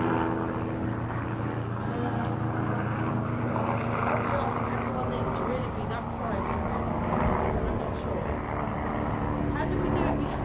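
A steady engine drone with a constant low hum, with faint voices under it.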